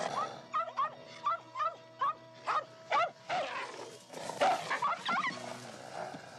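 Young mountain lion cubs giving short, high chirping calls in quick succession, about three a second, with a louder cluster of calls in the second half; soft film music runs underneath.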